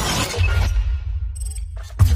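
Intro sound effects over music: a dense burst of noisy, crackling effects fades about half a second in. A deep bass drone then takes over, with faint glitchy flickers near the end.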